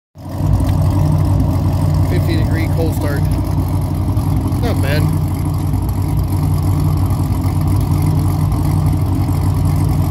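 Corvette C6 Z06's 7.0-litre LS7 V8 idling steadily through its exhaust just after a cold start.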